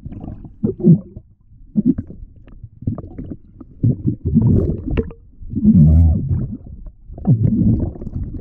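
Muffled underwater rumbling and gurgling of water moving around a submerged action camera, coming in irregular surges, with the loudest surge about six seconds in.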